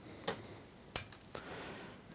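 A few faint, sharp clicks spaced unevenly, from small fly-tying tools being handled at the vise.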